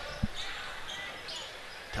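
Basketball dribbled on a hardwood gym floor, with one clear bounce just after the start, over the steady background noise of a gym crowd.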